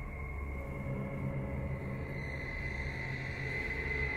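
Quiet, eerie background music: a low sustained drone with a faint steady high-pitched tone above it.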